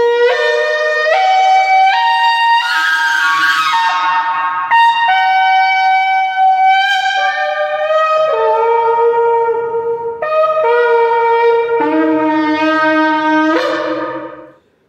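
A long 112 cm polished shofar blown through a run of distinct notes, stepping up in pitch, then down, then up again. A few seconds in, the tone turns rougher and breathier for a moment. The playing stops right at the end.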